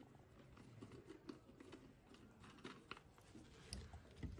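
Near silence: room tone with faint scattered clicks and taps from glassware and bottles handled on a tiled lab bench, a slightly louder tap near the end as a plastic reagent bottle is picked up.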